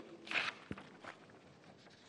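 A pause in a man's speech: a short rustle of handled paper sheets, a single soft knock just after, then faint room tone.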